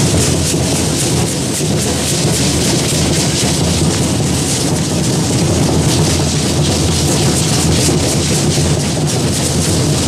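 Matachines dance percussion: drumming together with the dancers' rattles, a loud, dense, steady clatter.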